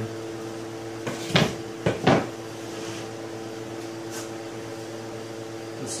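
Pallet-wood boards handled on a wooden workbench: a few sharp wooden knocks in quick succession between about one and two seconds in, over a steady hum.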